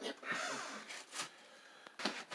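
A spoken 'yep', then faint hand-handling noise around the wall switch box, with a sharp click a little over a second in and another near the end.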